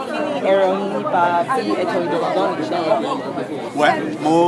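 Speech: people talking at close range, with crowd chatter behind.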